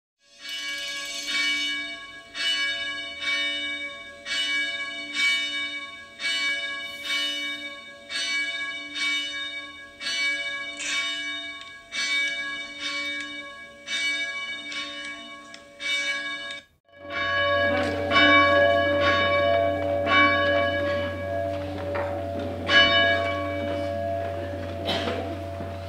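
Church bells ringing, strokes following each other at a little more than one a second, each left to ring on. A brief break about 17 s in, after which the strokes come more sparsely over a steady low electrical hum.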